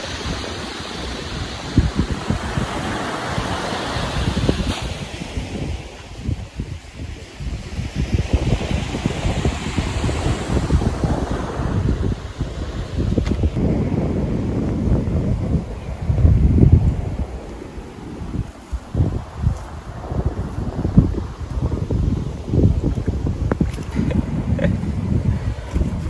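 Wind gusting across the microphone, an uneven low rumble that rises and falls, with a softer hiss in the first few seconds.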